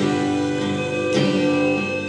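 Acoustic guitar strumming chords in an instrumental passage of a song, with a new strum about a second in and the chords left ringing.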